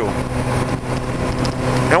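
Motorcycle engine running at a steady speed while riding, its hum holding one even pitch, under a steady rush of wind noise.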